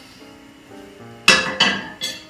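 Kitchenware clattering: two sharp knocks with a short ring, a fraction of a second apart, just past the middle, over faint background music.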